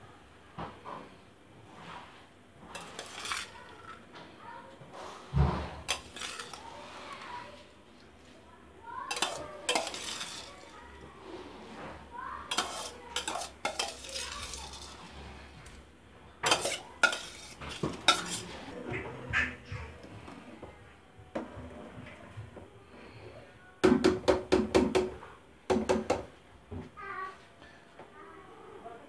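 A metal spoon scraping soaked rice off a steel plate into a pot of boiling broth, with clinks of metal on metal and stirring in the pot. A quick run of sharp taps comes near the end, the spoon knocked against the metal to shake off the rice.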